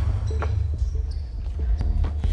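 A basketball bouncing on a hard court, a few separate bounces, during a rough pickup game.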